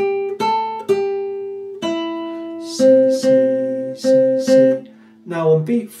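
Nylon-string classical guitar played fingerstyle, one plucked note at a time. A short melodic phrase with two longer held notes is followed by four repeated notes of the same pitch.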